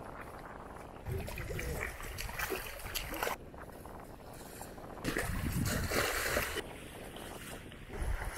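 Wind gusting on the microphone over shallow river water splashing around a wading man's legs. About five seconds in, a louder stretch of splashing noise comes as the thrown cast net lands on the water.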